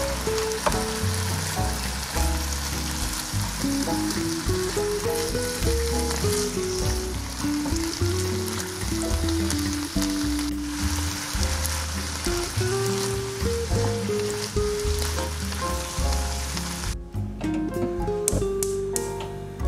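Sliced chicken breast and mushrooms sizzling as they fry in a nonstick frying pan. The steady hiss cuts off suddenly about a second before the end.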